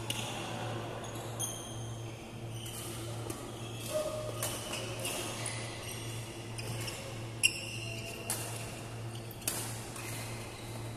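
Doubles badminton rally: rackets hitting the shuttlecock in sharp cracks, the loudest about seven seconds in, with sports shoes squeaking on the court floor between shots. A steady low hum runs underneath.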